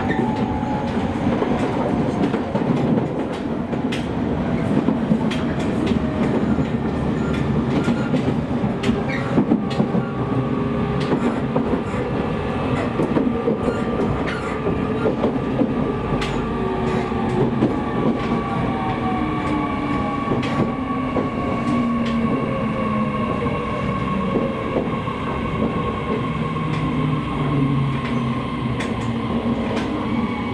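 Running sound of a JR East E501 series electric train heard from inside the car: wheels clattering over the rails with a steady rumble. Through the second half a motor whine falls in pitch as the train slows on its approach into a station.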